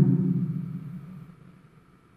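A man's voice drawing out the end of a name he is reading aloud, a low steady tone that fades away over about a second and a half.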